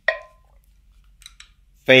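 Small guitar effects pedals being handled, with a few faint clicks and knocks as one is picked up, and a man's voice starting near the end.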